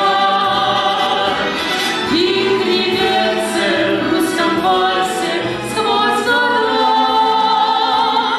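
A female and a male voice singing a slow waltz song together, holding long notes with vibrato, with musical accompaniment.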